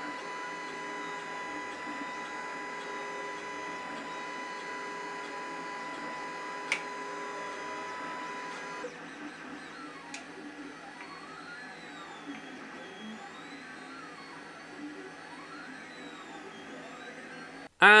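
3D printer running while printing a part: its motors give a steady whine of even tones at first, with one sharp click about seven seconds in. After a cut, the whines rise and fall again and again as the print head speeds up and slows down along its moves.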